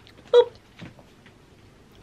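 A woman's short startled "oop" as she nearly loses her balance, followed by a quiet room with a few faint soft sounds.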